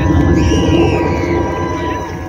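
Live band music played through an outdoor stage sound system and heard from within the crowd, with a heavy low end, a held steady note and sliding high tones over it.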